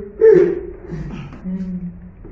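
A man gasping and grunting with effort as he shifts his weight on his arms. There are four short strained vocal sounds, the loudest about a quarter second in, and the last a held, level grunt near the end.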